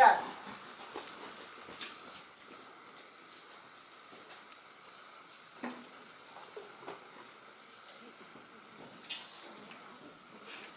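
A brief spoken word at the very start, then a quiet background with a few faint, scattered soft knocks.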